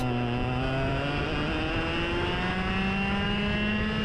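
Racing go-kart engine heard from on board the kart at speed. It gives a steady note whose pitch drifts slowly as the throttle changes.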